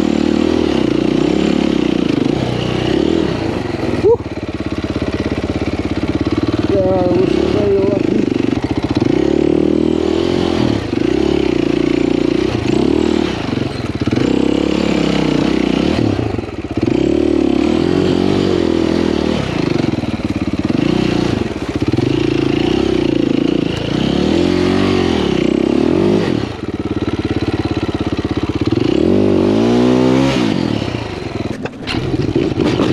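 Enduro dirt bike engine revving up and down repeatedly as the rider works the throttle over a rough, muddy woodland trail. There is a sharp knock about four seconds in.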